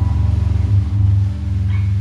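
Live rock band music at a quiet passage: a sustained low droning chord, held steady, with no drums.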